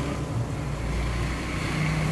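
Low, steady background rumble with a light hiss between spoken phrases.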